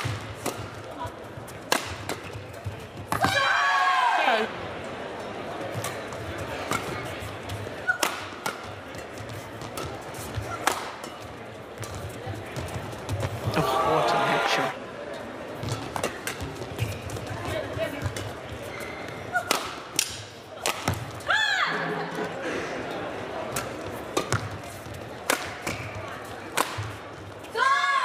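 Doubles badminton play: rackets strike the shuttlecock in a run of sharp cracks over a steady background of crowd noise in the hall. Several loud, high-pitched gliding squeals come in between the hits.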